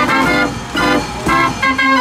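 52-key Gasparini fairground organ playing a tune on its pipes, in short separate chords with brief breaks between them.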